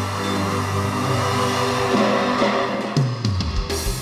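Live norteño band music with a sustained chord that rings out, then a run of drum hits about three seconds in, with one last strike near the end.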